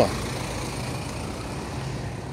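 A motor vehicle's engine idling close by, a steady low hum over street noise.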